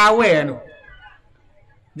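A man's voice through a microphone draws out a word that falls in pitch, then trails off into a pause of about a second and a half before he speaks again.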